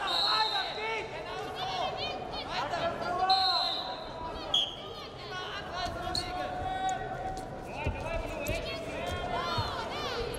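Wrestling shoes squeaking on the mat as two wrestlers grapple, with short whistle blasts just after the start and around three to four seconds in, over voices shouting in a large hall.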